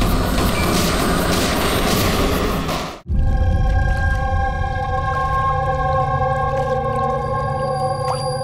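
Dramatic TV background score: a dense, loud passage that cuts off abruptly about three seconds in, followed by a sustained drone of several held notes over a low rumble.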